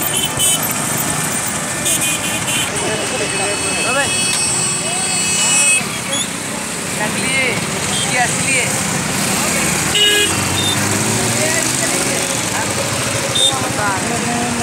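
Busy road traffic: motorcycle and vehicle engines running, with horns tooting for a few seconds near the start. Scattered voices and shouts from a crowd mix in throughout.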